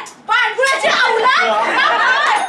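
Several people talking loudly over one another, after a brief lull at the start.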